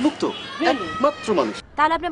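Speech only: a man and then a woman talking, with a sharply rising voice near the end.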